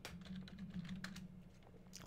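Faint typing on a computer keyboard: a quick run of key clicks that thins out after about a second.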